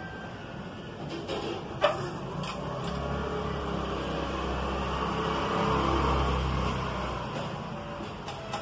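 A motor vehicle passing by, its engine hum swelling to a peak about six seconds in and then fading. A single sharp metal click from hand tools on the motorcycle's centre stand comes about two seconds in.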